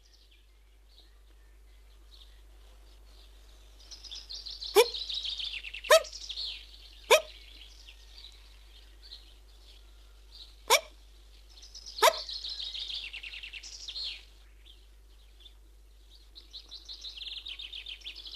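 A cartoon bee hiccupping: five sharp hics, three about a second apart, then a pause and two more. Behind them runs high twittering birdsong.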